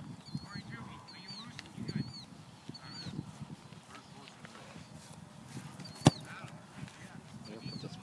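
A football kicked off a tee: one sharp smack of the foot striking the ball about six seconds in, the loudest sound. Throughout, a bird repeats a short high chirp roughly once a second.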